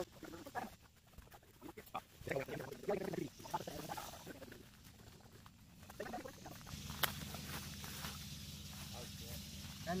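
Faint, indistinct voices of a group outdoors, with a single sharp click about seven seconds in; a steady low hum sets in over the second half.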